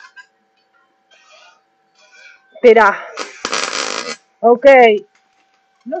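A person's voice in drawn-out exclamations, strongly rising and falling in pitch, twice in the second half, with a short hiss of about a second between them. A faint steady tone runs underneath.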